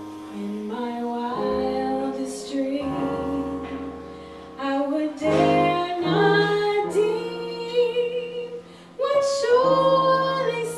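Live jazz: a woman sings into a microphone over digital piano, upright bass and guitar, the voice holding long notes with vibrato in the second half.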